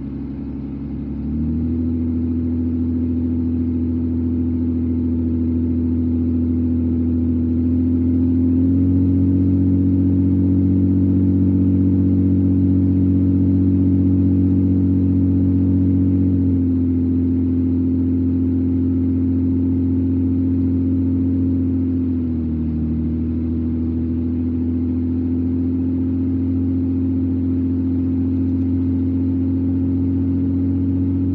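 Car engine and road noise heard from inside the cabin while driving, a steady low drone. It rises in pitch and loudness early on and again about a third of the way in, then eases back down about halfway through, with a short dip later.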